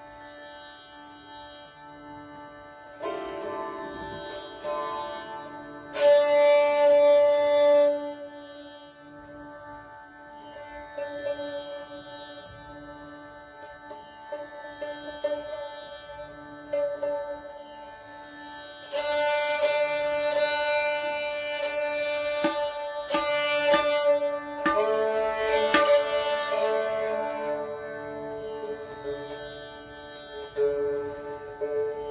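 Sarangi bowed in long held notes and short phrases over a steady drone, with quieter gaps between; the player is tuning the instrument between pieces. The loudest held notes come about six seconds in and again from about nineteen to twenty-seven seconds.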